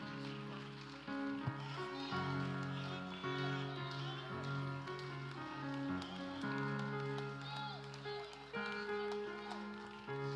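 Keyboard playing sustained chords that change every second or two, quieter than the preaching around it, with faint voices of people praying or worshipping over it.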